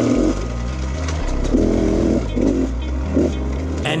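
Off-road dirt bike engine revving up and down in short bursts while being ridden through tight singletrack, heard on board from the rider's camera.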